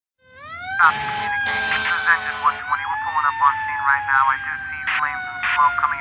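An emergency-vehicle siren winding up from silence in the first second, then holding a wail that slowly drops in pitch, with shorter, quickly sweeping siren calls over it.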